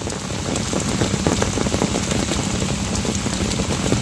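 Steady rain falling, a dense patter of many separate drops at an even level.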